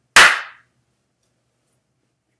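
A single sharp hand clap about a fraction of a second in, dying away quickly.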